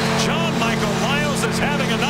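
An arena goal horn sounding a steady, loud chord after a home goal, with many short rising-and-falling whoops above it and the crowd beneath.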